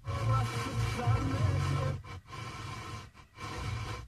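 Car radio's FM tuner stepping through stations: about two seconds of music from one broadcast (106.85 MHz, HRT-HR 2), then it cuts out abruptly as the tuner retunes. A quieter broadcast follows, which drops out again briefly.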